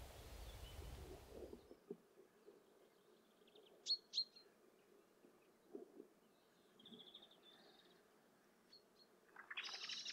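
Small birds calling faintly over quiet open-field ambience: two sharp chirps about four seconds in, a short trill a few seconds later, then a louder cluster of chirps near the end.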